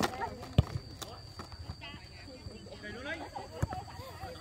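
Football being kicked on artificial turf: a few sharp thuds, the loudest about half a second in and another near the end, among players' voices calling across the pitch.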